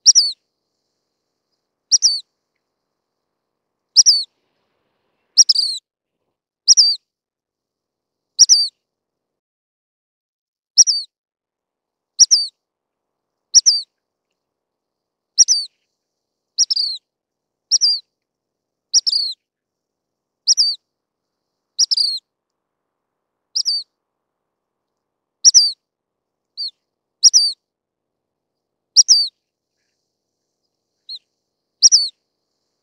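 Dark-sided flycatcher giving short, high call notes, each a quick downward slur. About twenty notes come at uneven spacing of roughly one to two seconds, with silence between them.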